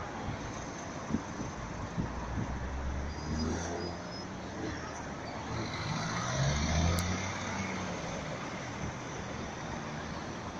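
City street traffic picked up by a smartphone's built-in microphone: a steady hum of road noise, with vehicles passing close by, their engine rumble swelling up about three seconds in and again around six to seven seconds. A couple of faint knocks come early on.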